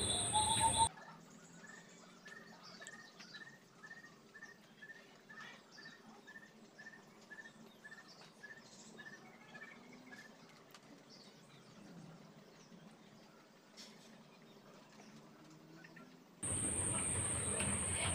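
Faint small bird chirping the same short note over and over, about two or three chirps a second for some eight seconds, over low background hiss. A steady hiss with a high whine starts near the end.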